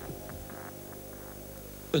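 A low, steady hum made of several held tones, most likely the background music fading down to a sustained drone. A man's voice begins at the very end.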